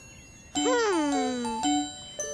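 Children's background music of light chiming bell notes. About half a second in, a pitched sound jumps up and then slides slowly down for about a second.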